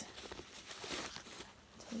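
Faint rustling and small scattered clicks from handling a leather handbag: tissue-paper stuffing crinkling and the metal clip of the shoulder strap being fastened.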